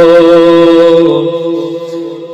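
A man chanting a long held note into a microphone in a Shia devotional lament, his voice wavering slightly on the note. The note fades away over the second half.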